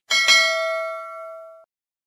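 Notification-bell chime sound effect from the end-screen subscribe animation: a bell ding struck twice in quick succession, ringing for about a second and a half before cutting off suddenly.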